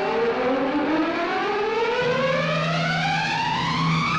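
A single siren-like tone in the film's background score slides slowly and steadily upward in pitch. A low held note joins it about halfway through.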